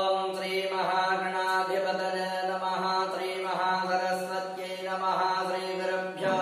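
A voice chanting a devotional verse, mantra-style, held on a steady, nearly unchanging pitch with syllables shifting about once a second.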